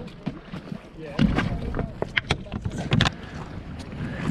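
Wind buffeting the microphone as a low rumble from about a second in, with scattered knocks and clicks of handling and brief faint voices in the background.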